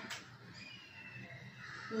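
Faint bird calls over quiet room tone.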